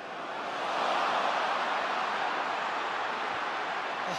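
Football stadium crowd noise, swelling about a second in and staying up as an attacker dribbles through the defence toward goal.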